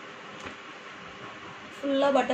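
Steady background noise with a faint hum during a pause in talking, with one soft thump about half a second in; a woman's voice starts again near the end.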